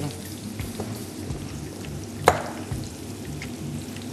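Sliced onions sizzling steadily in hot oil in a frying pan, cooking down to soften; one sharp knock about two seconds in.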